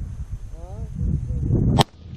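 A single rifle shot from an AR-15 chambered in 6.5 Grendel: one sharp crack near the end, after which the sound drops away abruptly.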